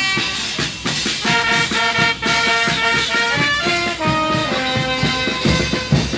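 Brass band playing a lively dance tune, the brass melody carried over a steady, regular drum beat.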